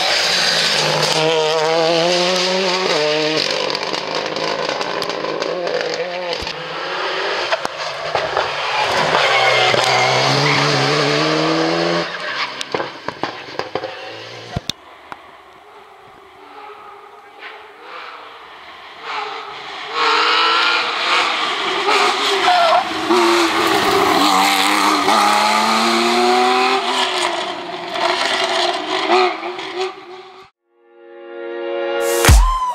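Rally cars passing at speed on a stage, their engines revving up and falling back through gear changes and lifts. One car runs for the first twelve seconds or so. The sound then drops away for a few seconds, and a second car passes loudly from about twenty seconds in.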